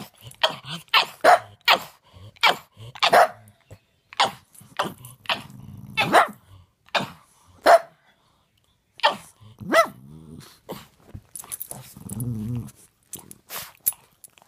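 A pug barking over and over in short sharp barks, about one or two a second, with a brief pause partway through and low growls in between. The owner takes it for a pug asking to be fed.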